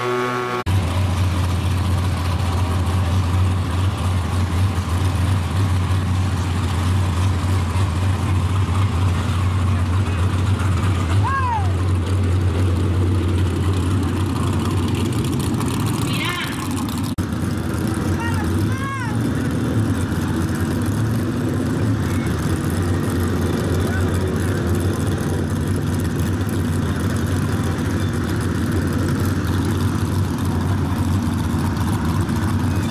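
A drag car's engine idling steadily with a low, even rumble, under crowd voices, with a few short high chirps in the middle.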